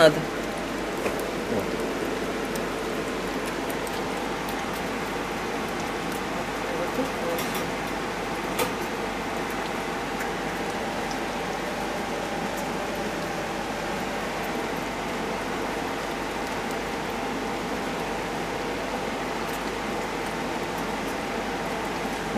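Young hedgehogs lapping and slurping milk from shared bowls: a steady mass of soft wet smacking, with a few faint clicks.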